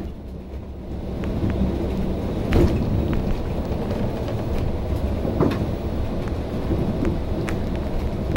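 Cabin sound of a MAN single-deck bus on the move: its MAN D2066 straight-six diesel running under a dense low rumble of engine and road noise, with frequent sharp rattles and knocks from the bodywork. It grows louder about a second in, as the bus comes out of a bend onto a straight.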